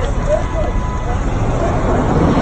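Street noise: a steady low rumble of traffic with faint voices of people talking in the background.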